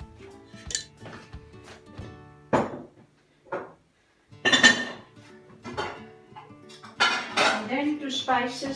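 A metal spoon clinking and scraping against a stainless steel platter several times as salt goes into the chicken marinade, loudest about halfway through, over background music.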